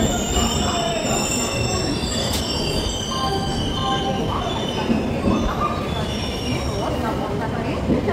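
Steel wheels of an Indian Railways express coach squealing against the rails over the steady rumble of the running train, several high-pitched screeches holding and shifting throughout.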